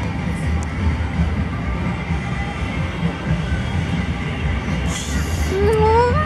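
A steady low rumble with faint music behind it. Near the end a woman's voice rises briefly.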